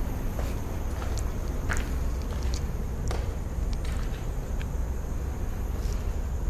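Footsteps on rubble and grit, short crisp crunches at an irregular walking pace, over a steady low rumble on the microphone.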